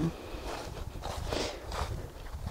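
Footsteps of a person walking through dry fallen leaves on an old railway bed: a few soft crunching steps.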